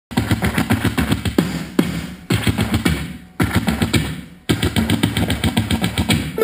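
Music with a rapid, busy percussive beat played through the Lasonic i931 boombox's speakers. It starts after a brief dropout right at the start, and the beat falls away briefly three times, about two, three and four seconds in.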